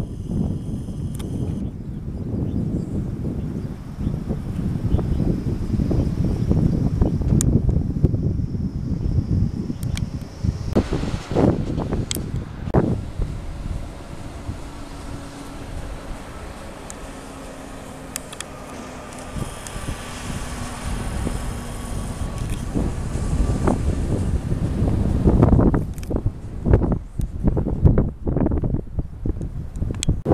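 Wind buffeting the camera's microphone, an uneven low rumble that eases off in the middle and comes in heavier gusts near the end, with a few sharp knocks from the camera being handled.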